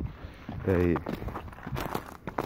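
Footsteps of a person walking over snow-covered ground, a scatter of short crunching steps.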